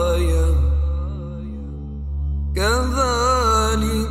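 Melodic, chanted Quran recitation over a steady low hum. The reciter draws out the final word 'āyah' for about the first second, pauses, and begins 'kadhālika' about two and a half seconds in.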